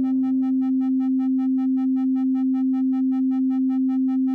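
Software modular synthesizer patch in VCV Rack holding a single steady low-mid tone. Faint higher overtones pulse over it about five times a second.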